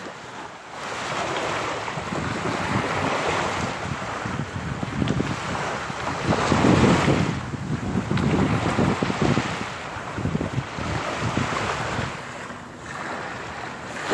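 Small waves breaking and washing up on a sandy shore, the surf swelling and ebbing every second or two, with wind noise on the microphone.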